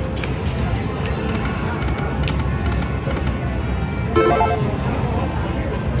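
Slot machine sounds over a steady casino-floor din, with a short bright electronic chime about four seconds in.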